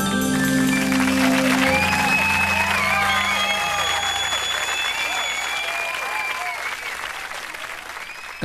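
A live band's final held chord rings out and stops about three and a half seconds in. Studio-audience applause and cheering run underneath it and slowly die away.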